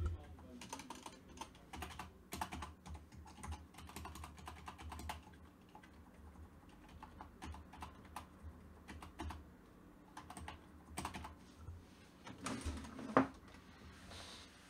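Typing on a computer keyboard: irregular runs of keystroke clicks, with a louder knock near the end.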